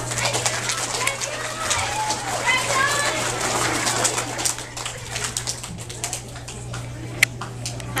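Indistinct voices of several people talking in a room, with scattered short clicks and knocks and a steady low hum underneath.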